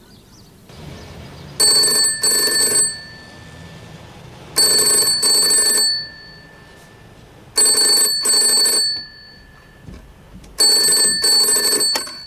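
Wall-mounted payphone ringing with the British double ring: four double rings about three seconds apart.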